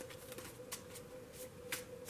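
Tarot cards being handled in the hand: a few soft, scattered clicks of card against card, over a faint steady hum.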